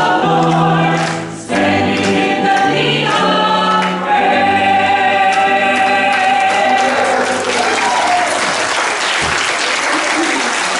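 Small church choir singing, ending on a long held chord, then the congregation applauding from about eight seconds in.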